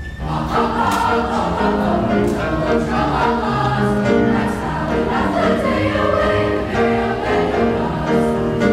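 A middle-school choir singing together in mixed voices, coming in loudly right at the start and holding sustained notes.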